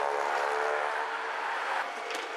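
A horn sounds one long, steady note for nearly two seconds and stops shortly before the end, with brief laughter over its start.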